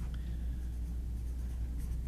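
Pen scratching on paper as someone writes at a table, faint under a steady low hum in the room.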